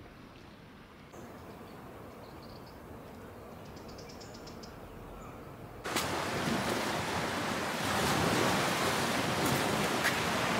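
Faint outdoor ambience, then from about six seconds in a loud, steady rushing of surf and wind at the shore.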